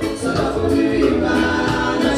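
Live band music with singing: held sung notes over a steady bass line.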